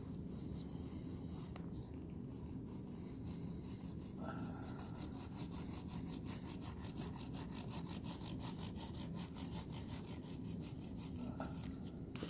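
Small foam paint roller rolling wet paint back and forth over a grooved MDF panel, a steady rhythmic rasping with about six soft ticks a second.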